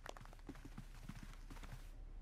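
Faint, irregular footsteps of several people walking out of a room.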